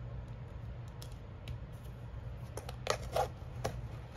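Plastic Stabilo fineliner pens clicking and rubbing against one another as they are handled and slotted back into the elastic loops of a fabric pencil case, with a run of clicks in the second half, over a low steady hum.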